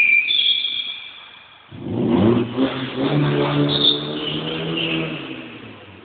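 A car being drifted: tyres squealing and the engine revving. The sound dies down during the first second and a half, then the engine picks up sharply at about two seconds with rising revs and more tyre squeal, before fading toward the end.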